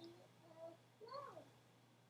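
A child's faint voice heard over an online video call: a few short, drawn-out syllables.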